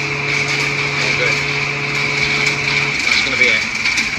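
Forecourt diesel pump dispensing fuel: a steady hum with a high whine, the low part of the hum dropping out about three seconds in.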